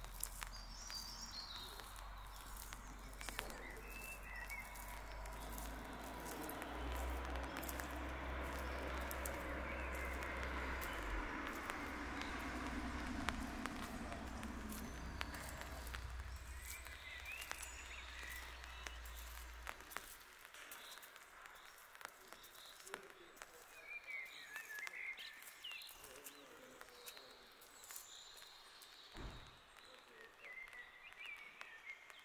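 Footsteps on pavement with a few birds chirping now and then, recorded on a camera's built-in microphone. A broad rushing noise swells through the middle, and a low rumble underneath cuts off suddenly about two-thirds of the way in.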